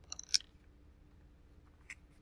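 Brief crackle and clicks of paper and a glue stick being handled, in the first half second, and a small tick near the end. Between them, quiet room tone with a faint steady hum.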